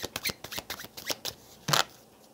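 A deck of cards being shuffled by hand: a quick run of soft card flicks, then one louder rustle near the end.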